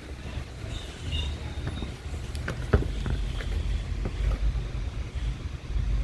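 Handling noise at a workbench: a few short clicks and knocks as plastic fan blade assemblies and a screwdriver are moved about, the sharpest about halfway through, over a steady low rumble.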